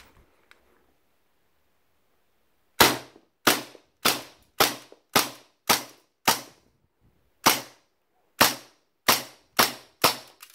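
A WE Mauser M712 gas blowback airsoft pistol firing twelve semi-automatic shots, starting about three seconds in. Each shot is a sharp crack of the cycling bolt, about two a second, with a slightly longer gap partway through. The run empties the magazine, which is still full of gas pressure on the last shot.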